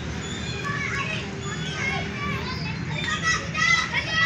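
Distant children playing and calling out on playground swings: scattered high-pitched shouts and chatter, busier in the last second, over a steady low background rumble.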